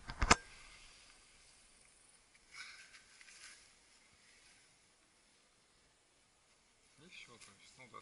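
A single sharp knock just after the start, then faint rustling and, near the end, quiet voices.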